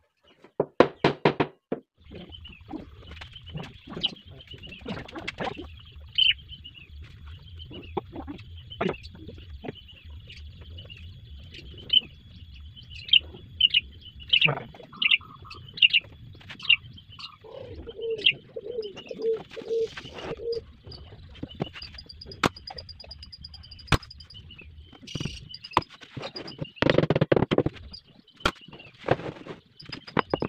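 A quick run of hammer blows on a plywood box about a second in, then birds chirping and a dove cooing a short series of notes past the middle, over a low steady hum with scattered knocks.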